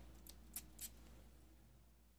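Near silence: room tone with a low hum and three faint, short soft noises in the first second.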